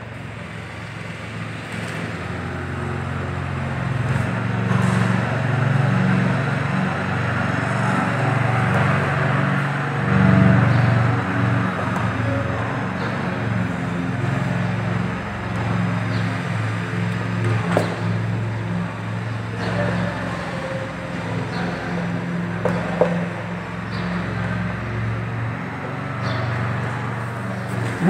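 Steady low rumble of a running vehicle engine or road traffic, swelling over the first few seconds and easing near the end, with a few faint clicks.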